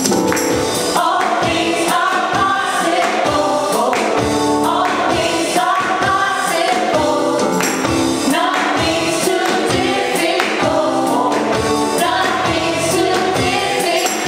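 A group of women singing a gospel worship song together, with a tambourine played in rhythm.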